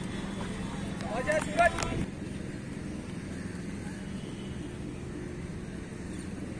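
A voice calls out briefly between about one and two seconds in, then steady outdoor background noise with a low, even hum.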